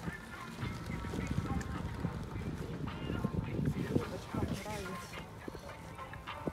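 Chairlift ride ambience: uneven low rumbling and knocks of wind on the microphone, with faint voices talking in the second half.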